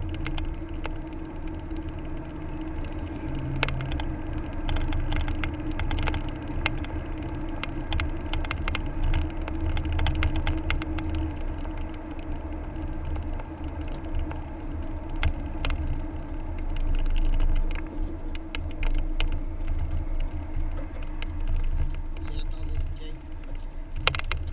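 Road noise heard from inside a moving car's cabin: a steady low rumble of engine and tyres, with many small ticks and rattles scattered throughout.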